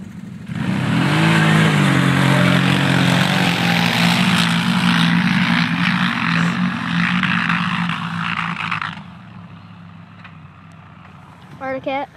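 Two 1000 cc V-twin ATV engines, an Arctic Cat Thundercat 1000 and a Can-Am 1000, launching hard from a standing start about half a second in. Their pitch climbs as they accelerate away, under a loud rushing noise. Around nine seconds in the sound falls away to a fainter distant engine drone.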